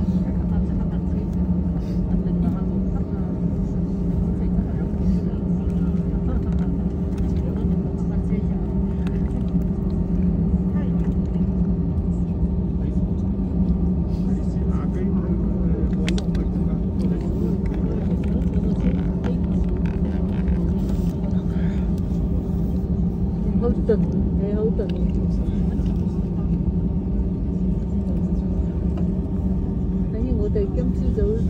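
Jet airliner cabin noise during taxi, heard inside the cabin: a steady engine drone with a constant low hum and an even rumble underneath.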